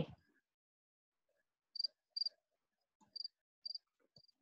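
A cricket chirping: four short, high chirps on one pitch, the first about two seconds in and the rest spaced roughly half a second to a second apart.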